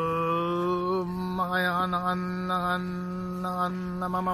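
A man's voice chanting one long held note at a steady pitch, its vowel shifting slowly so the overtones change.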